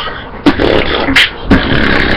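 Beatboxing: a person's mouth making sharp drum-like hits, three of them, with a continuous hissing buzz between the hits.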